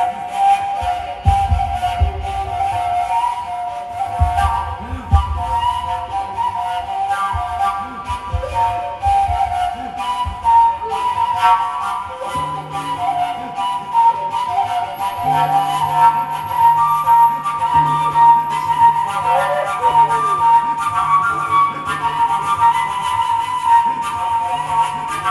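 Live acoustic music: a flute-like wind instrument plays a sustained, slowly moving melody over acoustic guitars, with low plucked chords in the first half and a held low note from about halfway through.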